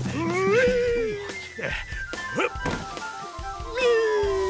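Cartoon soundtrack: background music with a long gliding whoop that rises near the start and slowly falls, two thumps around the middle, and another long falling whoop starting near the end, fitting a slide down a helter-skelter chute.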